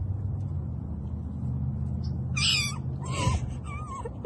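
A cat meowing twice in short calls, over a low steady hum.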